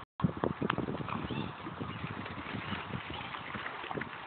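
A dog swimming, its paws paddling and splashing irregularly in the water.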